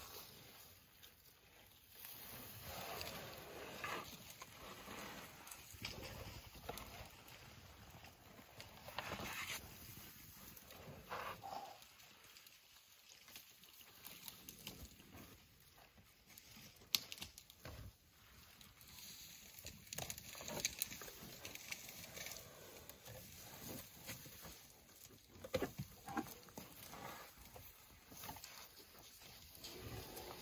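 Elephants stripping and chewing bark from a felled marula trunk: irregular crunching, rustling and snapping, with a few sharp cracks, the loudest a little past halfway.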